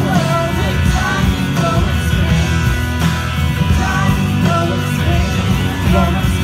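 Live rock band music played loud through a festival PA and heard from inside the crowd, with electric guitar prominent.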